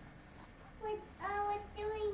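A young girl singing a few short, held notes on nearly the same pitch, starting about a second in.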